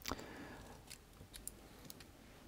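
Faint handling of an MK panel-mount socket and its wiring by hand: a sharp small click at the start, then three or four light ticks.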